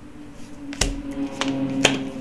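Three sharp snaps of a tarot deck being handled and shuffled, the first about a second in and the last near the end. Under them runs faint background music with long held notes.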